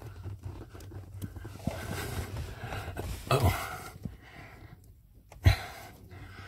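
A man breathing hard, with a low grunt of effort, as he struggles to push a plastic electrical plug onto a car's clutch position sensor and it won't seat. Faint clicks from handling the plug; one short sharp knock near the end is the loudest sound.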